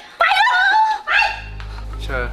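High-pitched, wavering whining cries in the first second, followed by a low steady drone.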